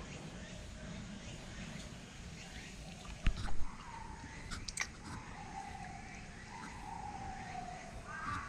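Bornean orangutan licking melting frozen yogurt from his fingers and lips, with a few wet smacks and clicks about three to five seconds in.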